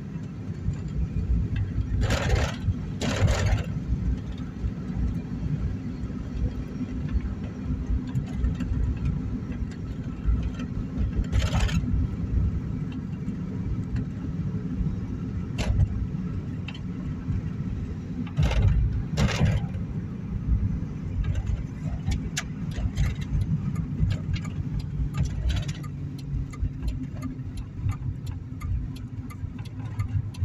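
Car cabin noise while driving: a steady low rumble from the engine and tyres, broken by a few brief knocks. In the last third comes a run of quick, regular ticks.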